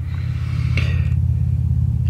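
A steady low background rumble, with a faint short hiss about a second in.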